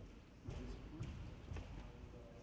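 Faint murmur of voices in a large hall, with a few light knocks or footfalls on the floor.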